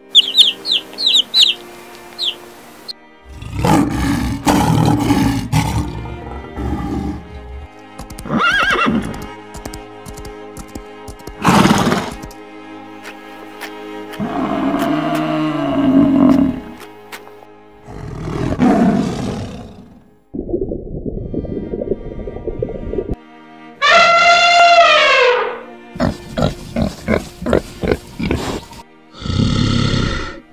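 Background music under a string of different animal calls edited one after another. Chicks cheep rapidly in the first couple of seconds, then come several louder calls of larger animals, among them a low, drawn-out call about halfway through and a high, falling cry near the end.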